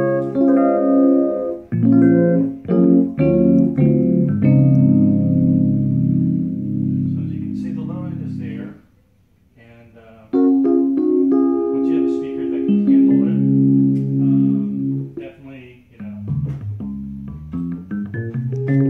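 Electric keyboard played through a small cigar box amplifier driving a 12-inch speaker cabinet: sustained chords and notes, with a break of about a second and a half near the middle before the playing resumes.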